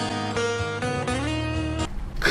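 Acoustic guitar lead line of sustained notes with sliding bends over a low held bass note, cutting off just before the end.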